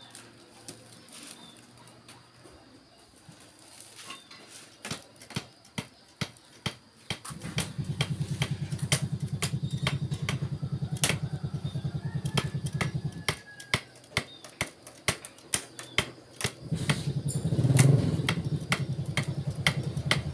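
A cotton-fluffing bow being struck over and over inside a bamboo basket, giving sharp twanging snaps about two to three times a second that loosen the raw cotton fibres. A low buzzing hum joins in from about seven seconds to thirteen seconds and again from about seventeen seconds.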